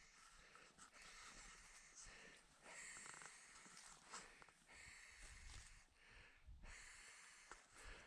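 Near silence, with a few faint breath-like noises close to the microphone.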